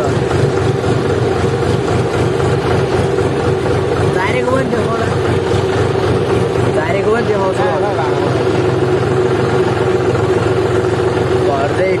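John Deere tractor's diesel engine running steadily under way, heard from the driver's seat, with a constant hum and low rumble and no change in speed.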